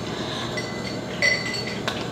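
Light clinks of tableware in the room: a short ringing clink about a second and a quarter in and a sharp tick near the end, over a steady room hum.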